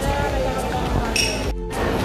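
Busy indoor market ambience, crowd chatter and stall noise, with a bright clink just over a second in; the sound drops out briefly near the end.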